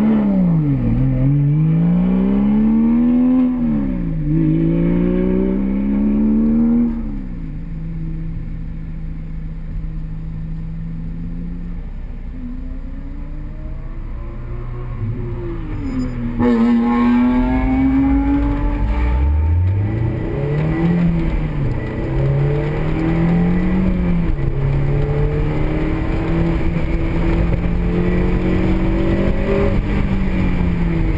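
Honda S2000's four-cylinder engine heard from inside the cabin as the car pulls away and gathers speed. Its pitch climbs and drops back several times, settles into a steady drone mid-way, then gets louder about halfway through and climbs and drops again through several more steps.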